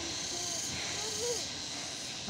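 Outdoor background: a steady high hiss, with faint distant voices briefly twice.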